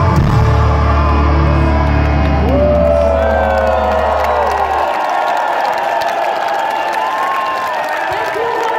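Symphonic metal band's closing chord held over a low bass note that cuts off about five seconds in. The crowd cheers and whoops throughout, and after the music stops the cheering goes on alone.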